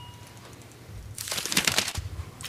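Paper towel crinkling and rustling as it is crumpled in a hand, a dense crackle in the second half after a quiet start.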